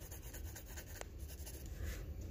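Pencil shading on workbook paper: quick back-and-forth graphite strokes, faint and scratchy, with a single light click about halfway through.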